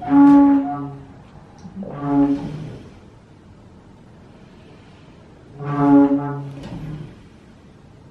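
Pipe organ sounding three low notes, each about a second long: one right at the start, one about two seconds in, and one near six seconds. The notes are set off by artificial organs driven by sensors on a human volunteer.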